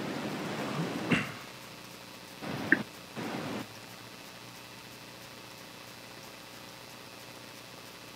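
Quiet room tone with a steady faint hiss, broken by a soft click about a second in and two short bursts of hiss around the third second.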